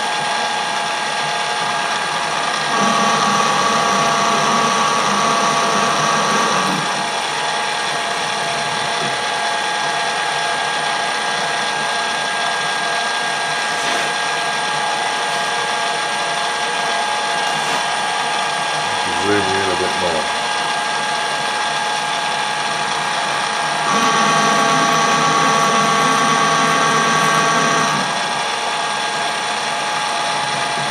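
Colchester Bantam metal lathe running under power while screw-cutting a thread, its gearing whining steadily. Twice, for about four seconds each, the sound gets louder with extra tones as the tool takes a threading pass along the work.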